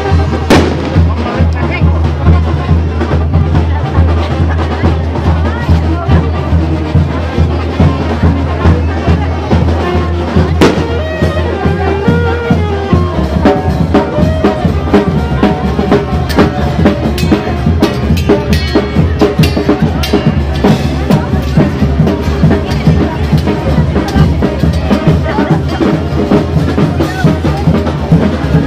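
Band music with a steady, even drum beat, with crowd voices mixed in. Two sharp cracks stand out, about half a second in and again about eleven seconds in.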